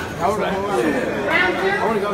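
Overlapping voices: several people chatting at once, without clear words, in a large room.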